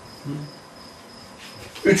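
A faint, steady high-pitched trill like an insect's. A short low murmur of a man's voice comes near the start, and his speech resumes at the very end.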